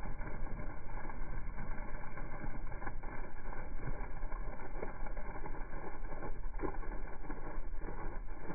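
Steady stream of water from a hose pouring onto soil and splashing into a muddy puddle, a continuous gushing and splashing with small crackles.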